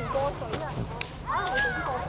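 Children's voices in the background, with one high drawn-out call near the end, and a single sharp click about a second in.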